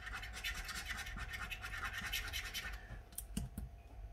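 A coin scratching the coating off a paper scratch card in rapid back-and-forth strokes, which stop a little past halfway. A couple of light clicks follow near the end.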